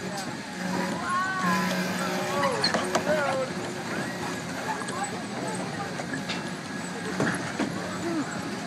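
Kiddie car ride turning, with a steady low hum and a few faint knocks. High-pitched children's voices call out over it about one to three seconds in.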